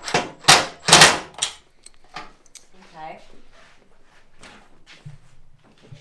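Cordless drill driving fasteners into a door mounting bracket in several short bursts during the first second and a half, followed by quieter handling sounds.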